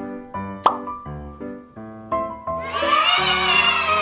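Upbeat children's background music of short, stepping notes, with a sharp pop about two-thirds of a second in. From just under three seconds in, a louder wavering sound rises over the music.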